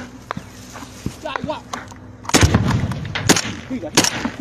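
Gunfire: a loud shot a little past halfway, with a low rumble trailing it, then two more sharp shots about a second apart near the end.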